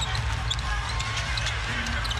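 Basketball game sound from an arena court: a ball being dribbled on the hardwood and short sneaker squeaks, over crowd noise and a steady low rumble.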